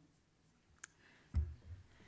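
Two short clicks about half a second apart, the second with a dull knock beneath it, against quiet room tone.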